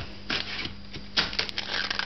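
Hands handling a home-made pinhole Polaroid camera and its peel-apart film print: scattered rustles and a sharp click about a second and a half in, with denser rustling near the end.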